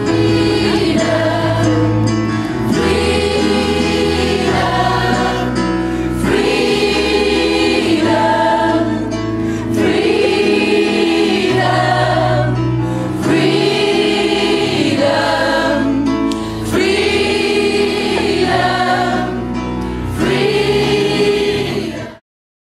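Youth gospel choir singing a gospel song together in harmony, in long held phrases that repeat every few seconds over a steady low note.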